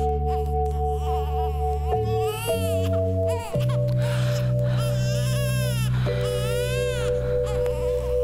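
A newborn baby crying in repeated rising-and-falling wails, over soft music of long held chords that shift every few seconds.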